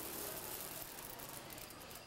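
Roasted coffee beans pouring onto a heap of beans: a steady patter of many small clicks that fades near the end.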